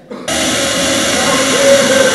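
A loud, steady, machine-like noise cuts in suddenly about a quarter second in and holds, with a faint wavering tone inside it.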